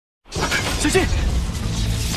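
A short silence, then a crackling lightning sound effect that sets in about a quarter second in and runs on loud and dense, over a film score.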